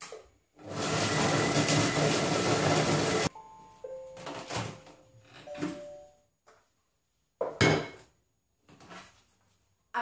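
Monsieur Cuisine Connect food processor chopping ham and soft cheese at speed 5 for about three seconds, then stopping abruptly. A few short electronic tones at different pitches follow, then knocks, the loudest one about three-quarters of the way through as the steel mixing bowl is lifted out.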